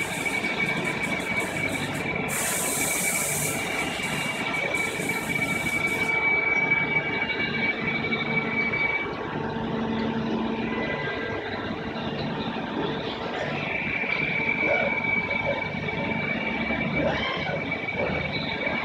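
AWEA LP4021 bridge-type CNC vertical machining center running: a steady high-pitched whine over a low mechanical hum. The whine stops about nine seconds in and comes back a few seconds later.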